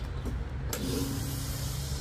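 LPG autogas nozzle being coupled to a camper's filler inlet, with a steady low rumble throughout. Under a second in, a sudden hiss starts and keeps going, with a steady hum for about a second.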